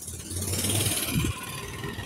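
A motorcycle passing on the street, its engine sound swelling about half a second in and easing off over the second half.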